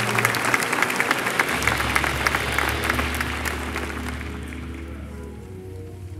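Congregation applauding, the clapping thinning out and fading away over the first few seconds. Soft music of held low chords plays underneath and carries on after the clapping dies.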